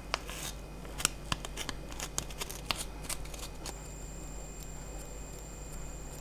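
A quick run of small, crisp clicks and crinkles in the first three seconds, loudest about a second in and again near three seconds: a paper tissue being handled and small scissors snipping the yarn fur of a polymer clay miniature dog. A faint steady high whine starts about halfway through and holds.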